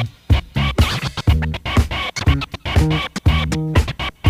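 Turntable scratching over a funk beat: rapid, chopped scratch cuts made by working a Serato control record against the mixer's crossfader, many short stabs a second on top of the drums.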